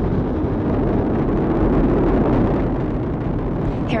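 Deep, steady noise of the Space Launch System rocket in flight, climbing on its four RS-25 core-stage engines and two solid rocket boosters.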